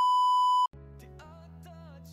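A loud, steady test-tone beep of the kind played with TV colour bars, lasting under a second and cutting off suddenly. Soft background music with held notes follows.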